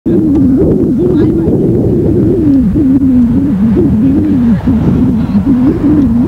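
Distant F-14A Tomcat's Pratt & Whitney TF30 turbofans at takeoff power: a loud low drone whose pitch wavers up and down. One engine failed during this takeoff.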